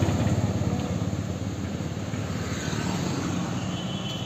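Heavy diesel dump truck engine running close by, its low rumble slowly fading as the truck moves off down the road.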